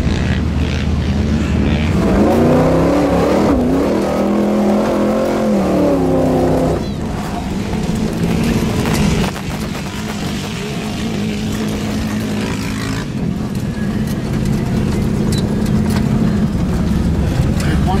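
Vintage Chevy pickup's engine heard from inside the cab, revving up and falling back a few seconds in, then running at a steadier pitch under load across the sand.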